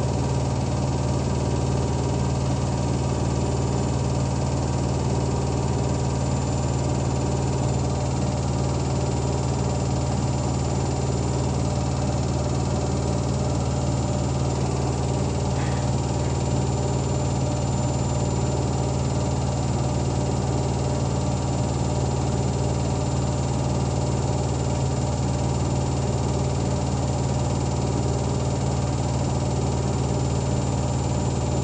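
Zanussi ZWT71401WA front-loading washing machine on a spin-only cycle, running with a steady low hum and a faint swish that repeats every few seconds. Water still lies in the drum with the soaked towels, so it has not yet reached high spin speed.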